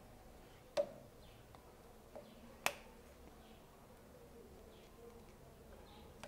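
Small sharp metal clicks from an external circlip held open in circlip pliers as it is pushed along a lathe gear shaft toward its groove: two clear clicks about two seconds apart, the second louder, with a few fainter ticks between.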